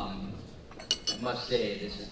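Tableware clinking, with a sharp clink about a second in, over voices in the room.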